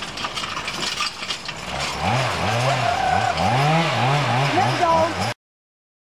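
Rattle and clatter of a horse-drawn logging forecart, with a log dragging over the forest floor behind it. From about two seconds in, a man's voice calls out over it in rising-and-falling calls. The sound cuts off suddenly near the end.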